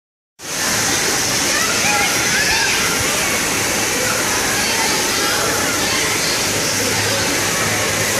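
Steady rush of splashing water from the water-play features, mixed with the din of children's voices in a large indoor water park hall; it starts abruptly about half a second in.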